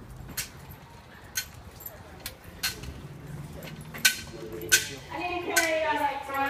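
A series of about seven sharp, irregularly spaced clicks or taps. A voice starts in the background about four and a half seconds in and carries on to the end.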